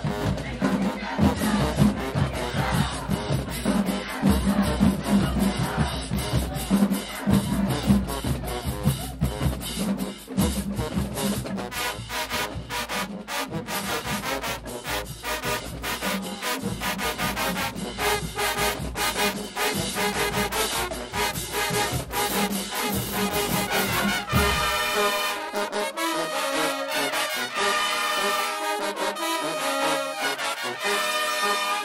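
A high school marching band playing loudly, with sousaphones, trumpets and drums over a steady drum beat. About 25 s in, the bass and drums drop out and only the higher brass, trumpets, keep playing.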